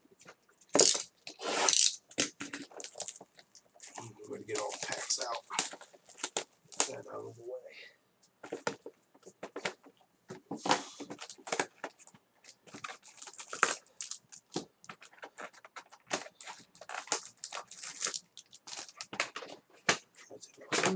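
Trading-card boxes being unwrapped and opened by hand: wrapping torn off with crackling and crinkling, among irregular knocks of cardboard boxes and lids being handled.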